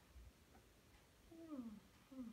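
Mostly quiet room tone, with one short voice-like sound falling in pitch about one and a half seconds in.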